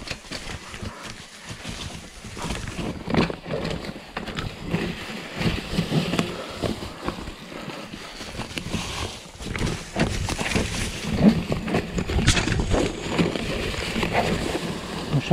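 Mountain bike rattling and knocking as it rolls down a rough, rocky forest trail, tyres running over stones and dry leaf litter, with irregular sharp clatters that grow denser in the second half.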